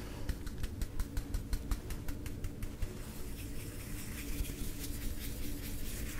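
Quick, irregular light taps and clicks of a makeup brush working pink eyeshadow from a palette, dense for the first few seconds and sparser after, over a faint steady hum.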